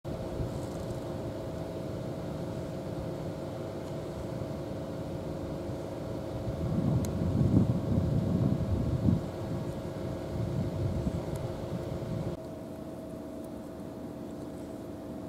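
Steady low hum of a distant engine with a few held tones. Uneven low rumbling swells over it from about halfway and cuts off suddenly near the end.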